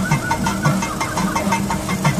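Thavil drums of a temple percussion ensemble played in fast, dense strokes, the barrel drums giving a low pitched thud under sharp stick and finger strikes.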